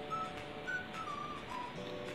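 A few short, soft whistle-like notes, one gliding slowly downward, over faint sustained tones.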